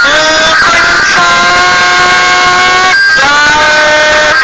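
A song: a synthetic, voice-changer-processed singing voice holding long notes with short pitch glides between them, over a backing track.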